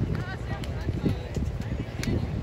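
Beach volleyball game ambience: wind rumbling on the microphone, distant chatter and calls from players and spectators, and a sharp smack at the very end.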